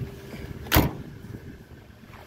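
A pickup's tailgate being shut: one sharp bang a little under a second in.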